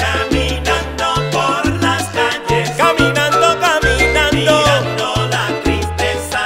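Charanga-style salsa music with no singing: a bass line in short held notes and steady percussion under melodic lines with vibrato.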